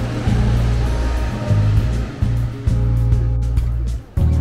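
Background music with a deep bass line whose notes change every half-second or so, over a steady hiss.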